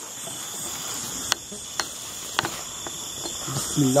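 Night chorus of crickets and other insects, a steady high-pitched trilling, with a few sharp clicks in the middle. A man's voice starts near the end.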